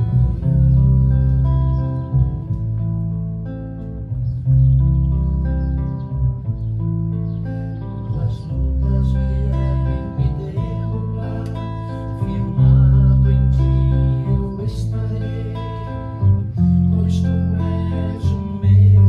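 Acoustic guitar and electric bass playing a slow instrumental tune together: deep bass notes held a second or two each under the guitar's plucked and strummed chords.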